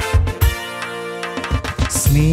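Electronic keyboard playing an upbeat song introduction over a drum beat. About half a second in, the drums drop out under a held chord for about a second, and the beat comes back near the end.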